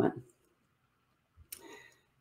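After a spoken word fades out, quiet, then a short click with a brief soft rustle about a second and a half in.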